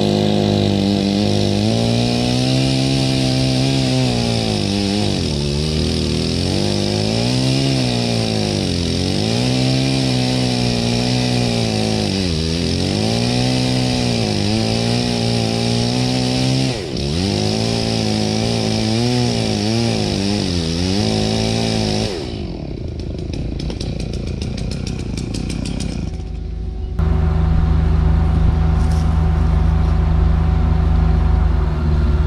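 Chainsaw running at full throttle in a felling cut through a large, very wet trunk, its pitch sagging under load and recovering again and again as the wet wood clogs the saw. The saw sound stops about 22 seconds in, and for the last few seconds a vehicle engine runs steadily.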